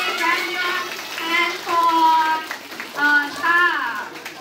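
A single voice singing a sing-song melody through a microphone and hall speakers. Gliding phrases alternate with a few notes held for about half a second.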